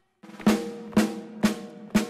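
A drum beating a steady march, about two strokes a second, each hit ringing briefly.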